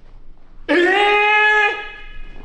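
A young woman's high-pitched martial-arts shout (kiai). It is one held note about a second long, starting partway in at a steady pitch, with a slight upward lift just before it stops.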